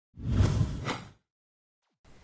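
A short whoosh sound effect of about a second, with a sharper accent near its end.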